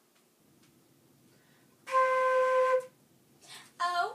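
A flute playing one steady held note for about a second, starting about two seconds in.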